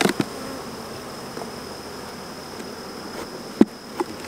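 Honeybee colony buzzing steadily around an open hive, with a few sharp knocks, the loudest about three and a half seconds in.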